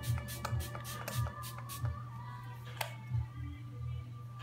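Fine-mist pump spray bottle of MAC Fix+ spritzed onto the face in a rapid run of short hisses, about six a second, stopping about two seconds in, with one more near three seconds. Background music with a steady beat plays underneath.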